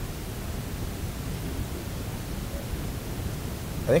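Steady room noise, a low hum under a faint hiss, with no distinct events; a man's voice starts right at the end.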